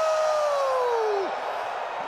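A man's long, high-pitched "Wooo!" yell: it sweeps up sharply, holds while slowly falling in pitch, and drops off about a second and a quarter in. Arena crowd noise underneath.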